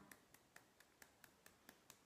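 Faint, evenly paced taps of fingertips on the edge of the other hand at the EFT karate-chop point, about four or five light clicks a second.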